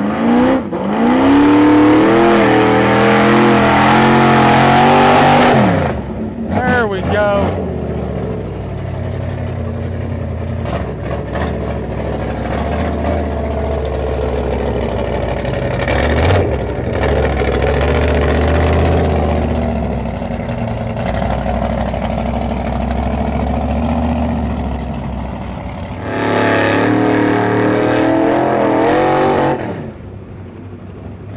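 Lifted mud trucks' engines revving hard at full throttle while ploughing through deep mud. The engine note climbs in the first couple of seconds and is held high until about six seconds in. After that the engines run lower and steadier, and another long full-throttle burst comes near the end.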